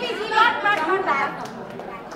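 Indistinct voices talking over one another, with no other clear sound.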